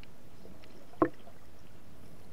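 Muffled underwater noise picked up by a camera held underwater, with one short, sharp sound about a second in.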